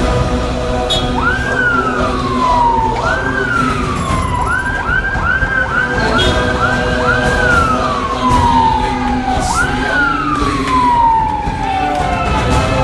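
A security vehicle's siren, each sweep jumping up in pitch and sliding slowly down. After a couple of long sweeps it gives a quick run of short ones in the middle, then one more long sweep. Music with sustained tones plays underneath.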